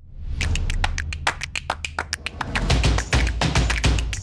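Intro sound effect for an animated logo: a rapid, irregular run of sharp clacking ticks, like tiles flipping over, over a deep bass rumble that swells louder in the second half.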